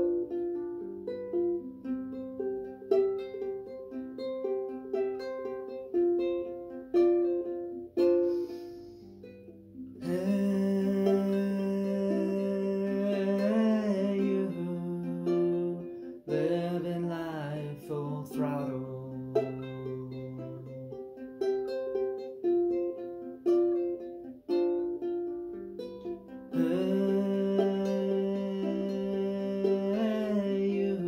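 Solo ukulele picking a repeating arpeggio pattern, a 12-string guitar part arranged for four strings. About ten seconds in, fuller sustained chords come in under a wordless voice gliding between notes; the picked pattern returns, and the fuller sound comes back near the end.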